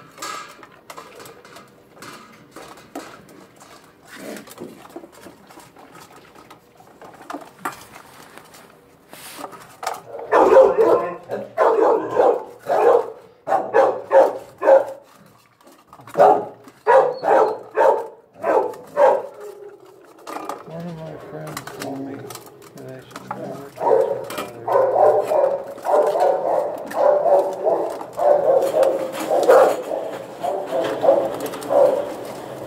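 A dog eating from a stainless steel bowl: scattered clicks and clinks of food and tongue against the metal. From about ten seconds in, a low voice-like sound comes in short pulses, about two a second, then returns as a steadier run near the end.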